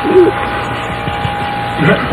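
A brief gap in talk-radio conversation on an old AM broadcast recording: a short voiced murmur just after the start, then only the recording's steady background noise with a constant thin whistle tone under it, before speech resumes near the end.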